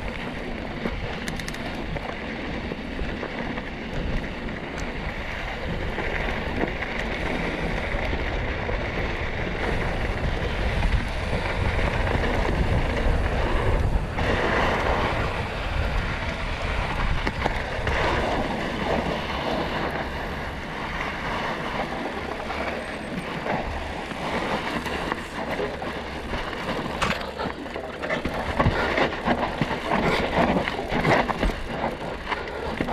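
Mountain bike descending a loose dirt and gravel trail, heard from a camera on the bike: steady wind rush over the microphone mixed with tyre noise on the dirt and rattling of the bike over bumps, with sharper knocks as it rolls over rocks and roots near the end.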